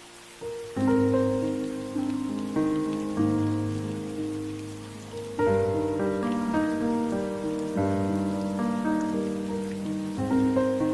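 Slow, gentle instrumental music of struck notes that ring and fade, layered over a steady hiss of rain. The melody comes in about a second in after a near-quiet start.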